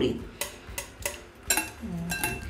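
A few light clicks and taps of a wire whisk against a glass mixing bowl of cake batter. The sharpest tap comes about one and a half seconds in and rings briefly.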